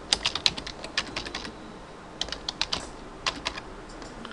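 Computer keyboard typing in quick runs of keystrokes with short pauses between. The keys are typing and then deleting mistyped letters.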